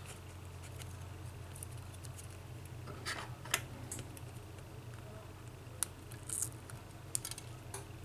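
Scattered light clicks and ticks of metal tweezers and fingertips on a smartphone's metal frame and the small loudspeaker module being worked loose, starting about three seconds in, over a steady low hum.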